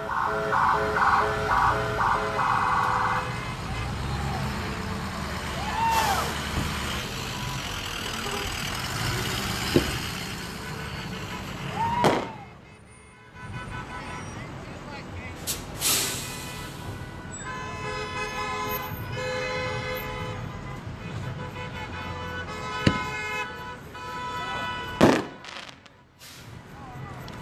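An emergency vehicle's siren pulses rapidly for the first few seconds, over crowd noise and vehicle sounds. After that, firework bangs come every few seconds. Steady blaring vehicle horns of several pitches join in about two-thirds of the way through.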